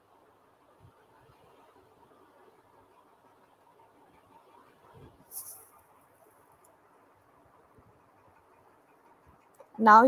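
Near silence: the faint steady background hiss of an open call line, broken a little after halfway by a short high hiss, with a voice starting at the very end.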